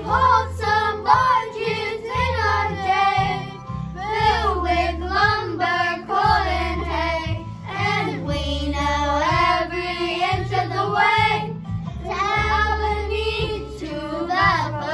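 Children's choir singing a song together over an instrumental accompaniment with a steady bass line.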